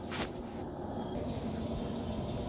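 Brief rustle of the phone camera being handled and moved, then low steady room noise.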